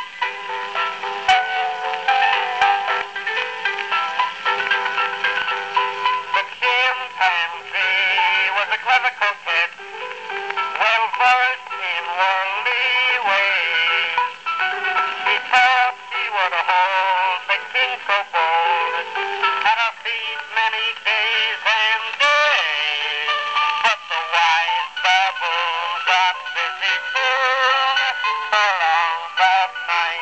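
An early acoustic wax-cylinder recording of a male tenor singing a popular song with instrumental accompaniment, played back through the horn of a Columbia AB graphophone. The sound is thin and narrow, with almost no bass.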